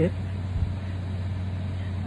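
Steady low hum in the background, with one soft low thump about half a second in.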